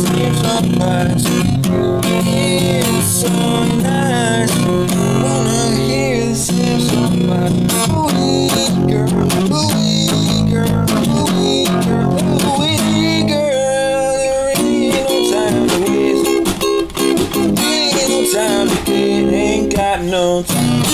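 Acoustic guitar strummed in a steady rhythm, with a voice singing along at times without clear words.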